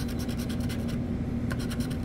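A scratch-off lottery ticket's latex coating being scratched off with the tip of a pen, in quick short strokes.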